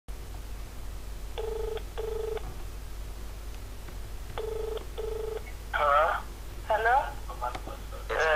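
Telephone ringback tone in a double-ring cadence, two short rings then a pause, heard twice down the phone line as the call connects. About six seconds in, a voice answers on the line.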